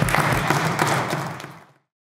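Applause from members of a legislative chamber, many hands clapping, fading out near the end.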